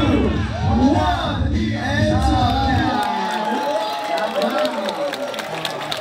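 Music with a heavy bass beat plays and then cuts off about halfway through, while a crowd cheers and shouts, with a drawn-out yell among the voices.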